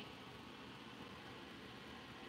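Faint, steady hiss of room tone with no distinct sound.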